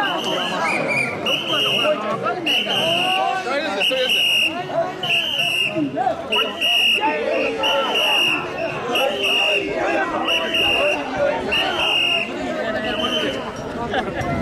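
A whistle blown in short, even blasts about once a second, keeping time for the mikoshi bearers, over the massed chanting and shouting of the crowd carrying the portable shrine.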